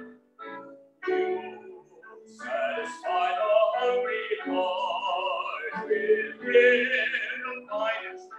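A man singing a vocal solo: short phrases with brief breaks at first, then long held notes, heard through a Zoom call's degraded audio.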